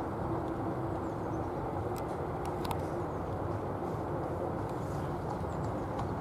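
A horse-drawn carriage moving over a sand arena: a steady rumbling noise, with a few faint clicks about two seconds in.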